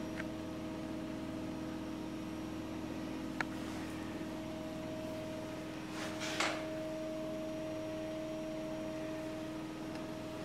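A steady mechanical hum with a couple of fixed tones, broken by a single sharp click about three seconds in and a short rustle about six seconds in.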